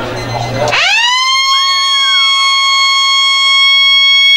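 Football ground siren winding up quickly about a second in, then holding one long, loud, steady note. In Australian rules football this siren signals the end of a quarter.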